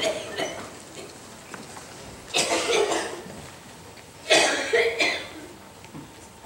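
A person coughing twice, about two and a half and four and a half seconds in.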